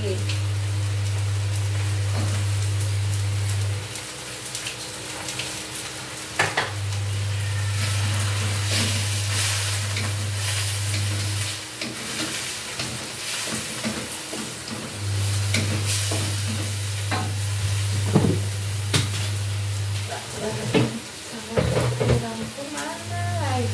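Bean sprouts and tofu stir-frying in a pan: a steady sizzle with the scrapes and clicks of a spatula stirring. A low hum cuts in and out three times, each time for a few seconds.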